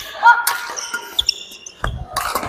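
Badminton rally: rackets striking the shuttlecock, with sharp hits about half a second in and near the end, and shoes squeaking on the wooden court floor, echoing in a large hall.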